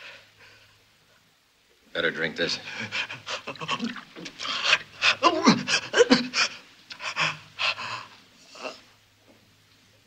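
A man panting and groaning in pain in quick, ragged breaths and cries while a bullet is cut out of his wound. It starts about two seconds in and dies away about a second and a half before the end.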